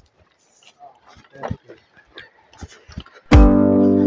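Faint, scattered crunching footsteps on a rocky dirt path, then loud background music with plucked guitar-like notes starts suddenly near the end.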